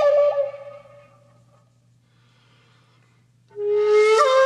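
Calm instrumental music: a long held wind-instrument note, wavering slightly in pitch, fades out with reverb in the first second. After a pause of about two seconds, a new sustained note begins near the end.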